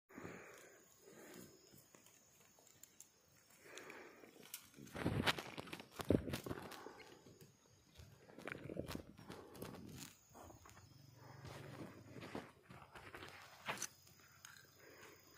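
Thin steel wire being handled and cut with pliers: faint rustling and scraping of wire, with a few sharp clicks, the loudest about five and six seconds in.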